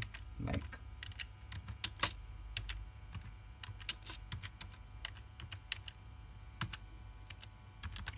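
Computer keyboard typing: irregular keystrokes, several a second at first, thinning out over the last few seconds.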